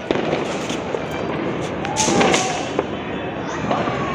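Fireworks and firecrackers going off: a dense run of distant crackling with several sharper bangs, the loudest about two seconds in.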